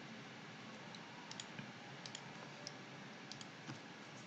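Faint, irregular clicks of a computer mouse, about eight light clicks spread over a few seconds, over low steady hiss.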